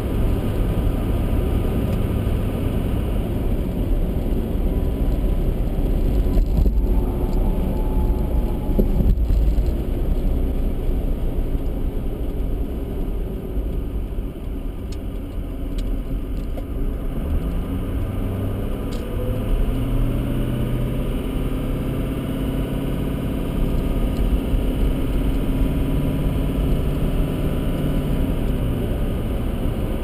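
A car driving, heard from inside the cabin: steady engine and tyre rumble. The rumble eases a little about halfway through, then the engine note climbs as the car accelerates again.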